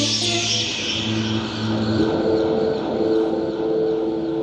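Electronic music breakdown played live on synthesizers: held synth notes with a high hissing wash that slowly fades, and no drum beat.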